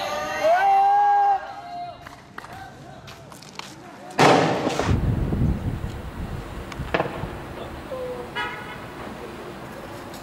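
A long, high, drawn-out shout at the start, then a sudden loud bang about four seconds in, followed by a low rumble that fades over the next two seconds. A sharp crack comes near seven seconds.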